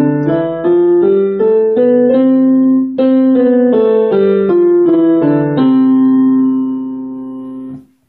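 Digital piano playing a C major scale with both hands, one note after another at about two or three notes a second, climbing and then coming back down. It ends on a held C that fades and then cuts off suddenly just before the end.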